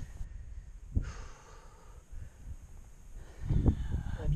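A man breathing hard while scrambling over loose rock, with a sharp knock about a second in and a louder low rumble near the end.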